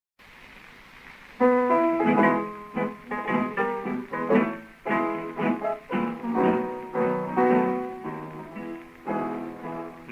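Piano and guitars playing the instrumental introduction of a 1929 electrical tango recording, transferred from a 78 rpm record. The music starts about a second and a half in, after faint hiss.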